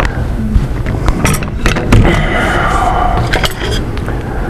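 A small handheld router with its bearing guide attachment being handled and set down on a workbench: a few clicks and knocks, over a steady low rumble.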